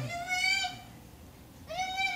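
A small child's high-pitched vocal squeals: one drawn-out call held for under a second, then a second one starting near the end.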